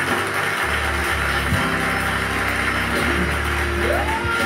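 A gospel worship backing track starting up, with sustained low chords that change every second or so. A voice slides up into singing at the very end.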